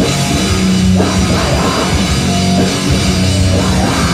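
Grindcore band playing live: heavily distorted electric guitars holding low notes over a drum kit, loud and dense, with fresh strikes and crashes about a second in and at the end.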